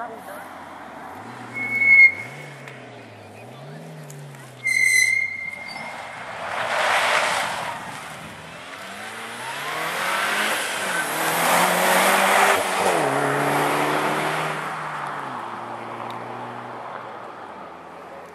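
Mitsubishi Lancer Evolution rally car's turbocharged four-cylinder engine revving hard, rising and dropping in pitch through repeated gear changes, with tyres and gravel spraying as it passes close, loudest around twelve seconds in, then fading away. About two seconds in and again near five seconds, two short, shrill whistle blasts: the warning that a car is coming.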